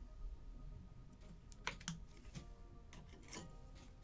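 A few short, faint crackling clicks in two clusters, one near the middle and one near the end, from the screen of an Apple Watch Ultra being pried up by hand, over faint background music.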